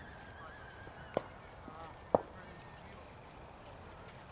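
Faint honking calls of birds in the distance, over an open-air background hum, with two sharp knocks about a second apart as the loudest sounds.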